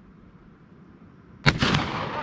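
A single gunshot about one and a half seconds in, ringing briefly after the crack, from a firearm fired at a target.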